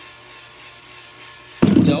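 A hand-held drill spinning a painting canvas, a faint steady hum. A spoken word cuts in loudly near the end.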